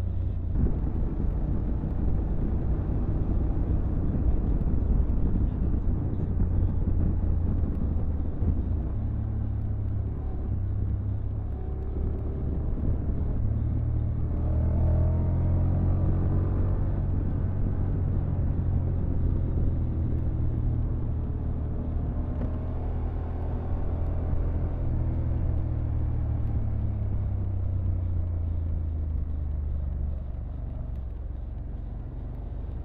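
Honda motorcycle ridden at road speed: a steady engine rumble mixed with wind rush. The engine note climbs and falls in pitch about halfway through and again later as the bike speeds up and eases off.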